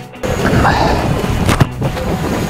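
Background music, with one sharp thwack of a football being kicked about one and a half seconds in.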